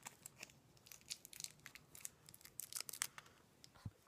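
Faint, irregular scratchy clicks and rustles of an eyeshadow palette and makeup brush being handled close to the microphone, with a soft thump near the end.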